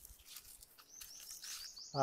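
A small bird calling: a rapid, even series of short high chirps, each sliding down in pitch, about six a second, beginning about a second in.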